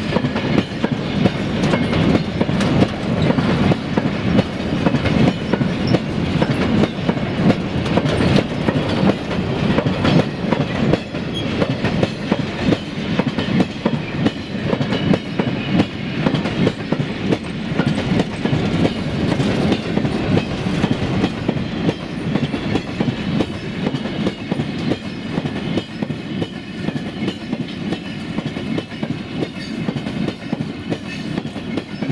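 Covered box wagons of a freight train rolling past close by, their wheels clattering steadily over the rail joints, a little quieter toward the end.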